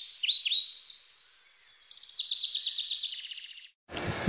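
A songbird singing: a run of clear down-slurred whistles, then a fast trill in the second half that stops suddenly near the end.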